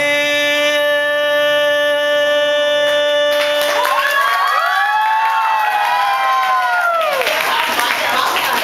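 A man's voice holds the long final sung note of a Vietnamese song for about four seconds. An audience then cheers with many overlapping rising and falling whoops, and applause breaks out near the end.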